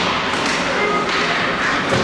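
Ice hockey play in a rink: skates scraping the ice and several sharp knocks of sticks and puck, with spectators' voices underneath.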